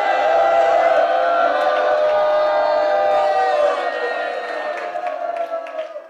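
Many voices holding one long sustained cry together. It fades away over the last two seconds.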